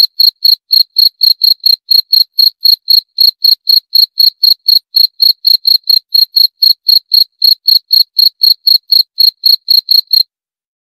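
A cricket chirping in a steady, even rhythm, about four short high-pitched chirps a second.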